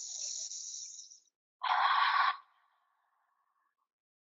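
A woman breathing deliberately: a hissing inhale through the nose for about a second, then a short, louder, forceful exhale through the mouth that trails off.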